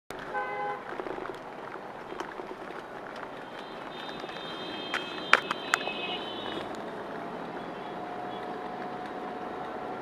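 City traffic heard from inside a moving taxi: a vehicle horn toots briefly at the start, and a higher-pitched horn sounds about four seconds in, over the steady noise of the car and the passing motorbikes. A few sharp clicks come around five seconds in.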